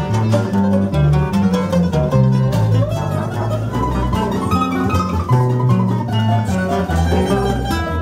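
Instrumental fado passage: a Portuguese guitar plucks the melody over a viola (classical guitar) accompaniment, with a bass line stepping from note to note underneath.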